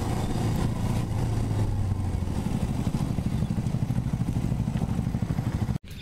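Motorcycle engine running at low revs as the bike rolls slowly: a steady low hum that turns into a quick, even pulsing about halfway through. It cuts off abruptly near the end.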